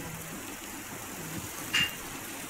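Onions and prawns sizzling gently in a pot with a steady, soft frying hiss. A brief clink of the steel spoon against the pot comes near the end.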